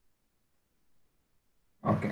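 Near silence, then a man's short, loud, breathy vocal burst into a headset microphone near the end.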